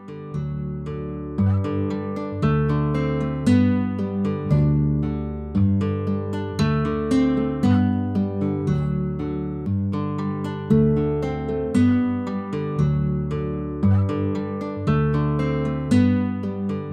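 Background music: an acoustic guitar playing a steady pattern of plucked notes, each ringing out and fading before the next.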